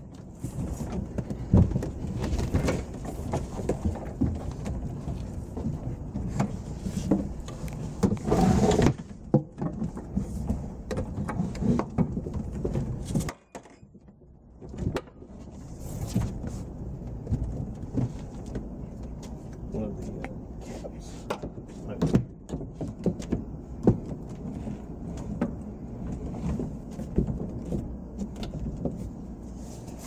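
Handling noise from raising a prop tiki hut's roof onto its poles: scattered knocks and clatter over a low rumble. The sound drops away suddenly about thirteen seconds in, then picks up again a couple of seconds later.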